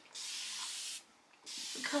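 Continuous-mist spray bottle spraying water onto hair: one steady hiss just under a second long, then a brief pause and a second, shorter spray.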